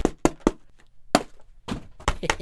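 Plastic jerky pouch crackling as it is handled: about six short, sharp crackles with quiet gaps between them.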